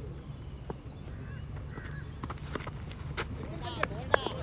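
Open-air cricket ground ambience: a low steady hum with distant voices of players calling, and scattered light footfalls on the dirt that grow busier near the end as the bowler runs in.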